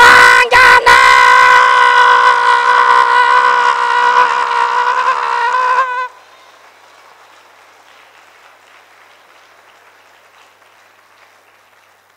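A man's voice holding one long, loud, high-pitched shout for about six seconds, with a couple of sharp knocks near the start; the shout then cuts off, leaving only faint room noise.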